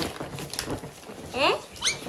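Faint rustling of tissue paper as a present is pulled from a gift bag, then a short, high, rising yelp about one and a half seconds in, followed by a second brief rising squeak.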